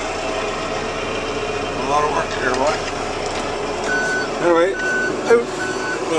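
A vehicle's reversing alarm beeping: a steady high beep repeating a little faster than once a second, starting about four seconds in, over a steady background rush.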